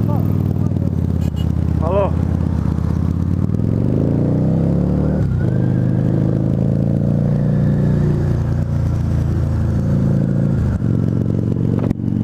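Harley-Davidson V-Rod Muscle's liquid-cooled Revolution V-twin, fitted with Vance & Hines Competition Series slip-on exhausts, idles at a stop and then pulls away. Its pitch rises under acceleration, drops briefly at a gear change about five seconds in, then climbs again and settles into a steady cruise, with a second short shift near the end. It is heard through a microphone inside the rider's helmet.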